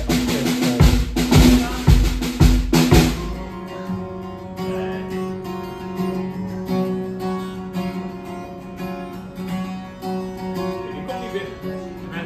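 A Ludwig drum kit is played hard for about the first three seconds, with kick and snare hits. Then acoustic guitar chords ring out steadily in a live band soundcheck.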